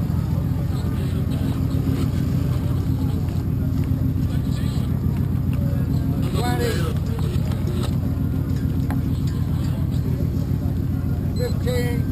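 A steady low engine drone, with brief faint voices about six and a half seconds in and again near the end.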